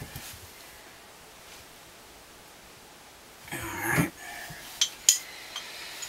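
Handling of a steel pipe wrench and iron pipe fittings on a gas line. It is quiet at first, then a brief burst of noise about three and a half seconds in, followed by two sharp metal clinks about a third of a second apart.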